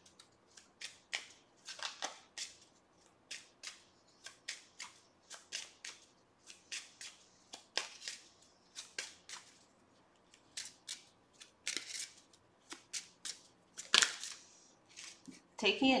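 A deck of tarot cards being shuffled by hand: irregular short clicks and snaps of card against card, a few a second, with the loudest snap near the end.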